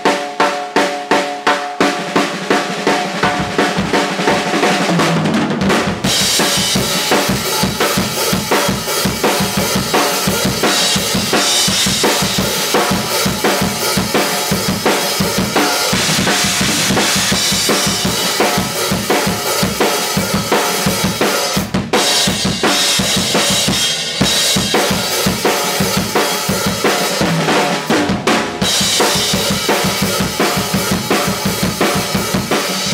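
Yamaha Hybrid Maple drum kit played solo. It opens with a run of fast, evenly spaced strokes on the drums, then about six seconds in breaks into a full groove of bass drum, snare and cymbals, with two brief breaks in the second half.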